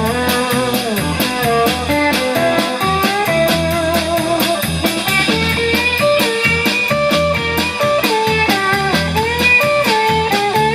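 Live blues-rock band playing an instrumental break: a semi-hollow electric guitar plays a lead line with bent notes over electric bass and drums keeping a steady beat.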